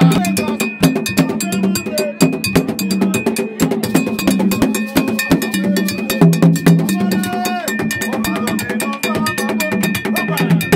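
Gagá hand drums beaten in a fast, dense rhythm, with metallic percussion clanking along and voices singing in snatches. A steady high ringing tone sits over the music, joined by a second, lower one about halfway through.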